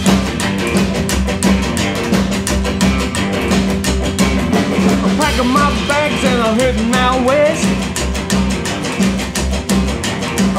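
Rockabilly band playing an instrumental break at a fast, steady beat: upright double bass, electric guitar, strummed acoustic guitar, and a snare drum with a cymbal.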